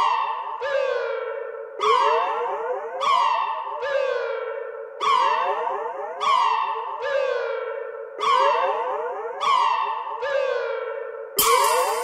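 Electronic track opening on a repeating synthesizer motif: echoing notes that slide down in pitch and fade, in a figure that repeats roughly every one and a half to two seconds. Just before the end, a full beat with bright, noisy percussion comes in.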